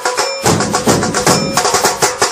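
Music with fast, dense drumming; the drums get fuller and heavier about half a second in.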